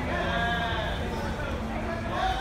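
A voice calling out in long drawn-out shouts that rise and then fall in pitch, over a steady open-air stadium background.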